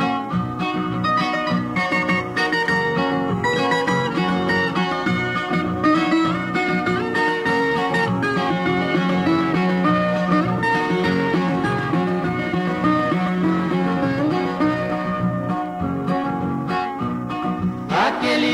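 Instrumental break of a cururu, a Brazilian caipira folk song: plucked acoustic string instruments play a rhythmic melody with no singing.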